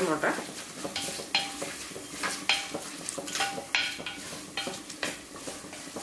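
Wooden spoon stirring and scraping around an unglazed clay pot, in repeated strokes about once or twice a second, over a steady sizzle of sliced shallots, chilli and curry leaves frying in oil.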